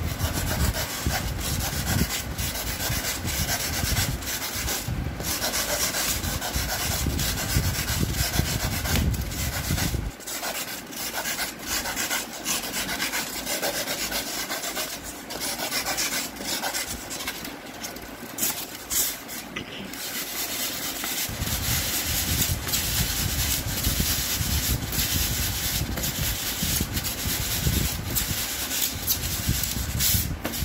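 A thin knife blade sawing and rubbing its way through a thick sheet of thermocol (expanded polystyrene) in many short strokes. The heavier, lower part of the rubbing drops away for a stretch of about ten seconds in the middle, then comes back.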